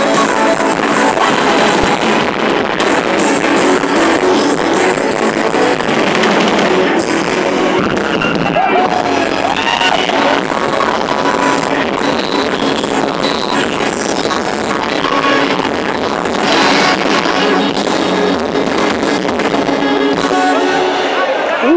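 Loud live music from a concert stage's sound system, dense and unbroken.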